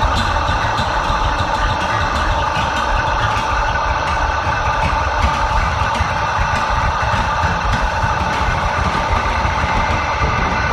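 A steady, dense drone with a low rumble underneath, from an experimental music recording; it holds at one level with no beat and no vocals.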